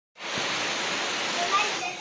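Heavy rain pouring steadily onto trees and the ground, a dense even hiss, with a brief voice coming in near the end.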